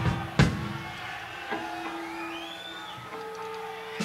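Between-song stage sounds from a live rock band: two drum hits right at the start, then held guitar or bass notes ringing on, with a high whistle-like tone that rises and falls about halfway through.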